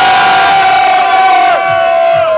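Nightclub crowd shouting and cheering, with one long held shout standing out above the crowd noise, fading out just after the end.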